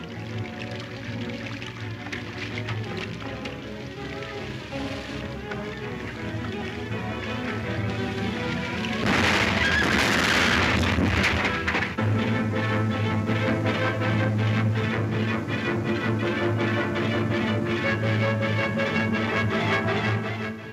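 Dramatic film-score music, with an explosion about halfway through: a sudden blast and about three seconds of rumbling noise over the music. After the blast the music comes back louder, with a steady beat.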